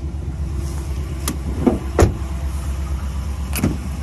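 Handling noise from a pickup truck's rear door over a low steady rumble: a few short knocks, the loudest about halfway through, as the door is shut.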